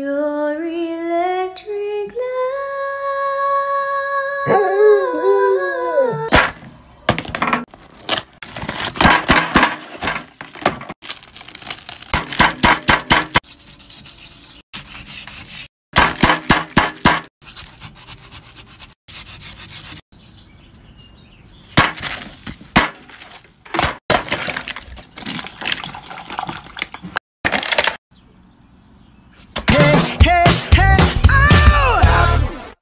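A border collie howling along, one long note that rises, is held and wavers, breaking off about six seconds in. After that comes a long run of crisp crunching and cracking in irregular clusters: kinetic sand being cut and crumbled.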